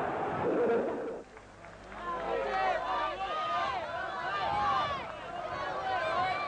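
A noisy stretch of crowd sound for about a second. After a brief dip, several raised voices talk over one another for a few seconds, with crowd noise behind them.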